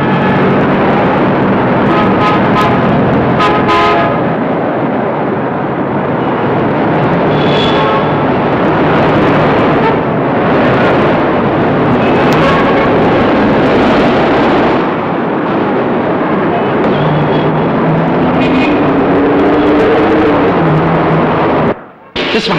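City street traffic: cars passing in a steady wash of engine and tyre noise, with a couple of short car-horn tones about two to four seconds in. It cuts off suddenly near the end.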